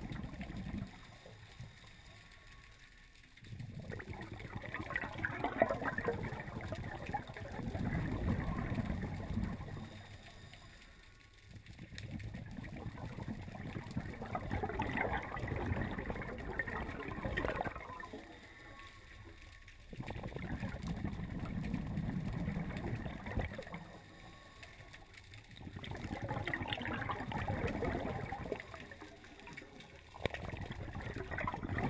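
A scuba diver's regulator breathing, heard underwater: four long rushes of exhaled bubbles, each a few seconds long, with short quieter gaps between them while the diver breathes in.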